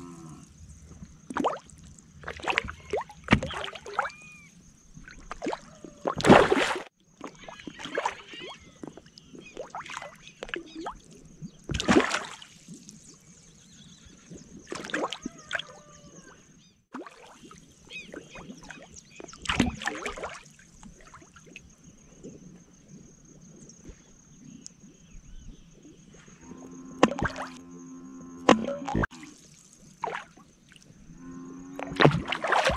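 Fish taking floating feed pellets at the water's surface: irregular splashy gulps and pops, about a dozen spread unevenly, the loudest about six seconds in. A faint steady high-pitched whine runs underneath.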